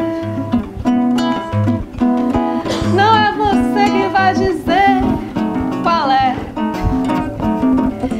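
A nylon-string classical guitar strummed and picked as accompaniment to women singing a samba song, the voices gliding up and down over the chords.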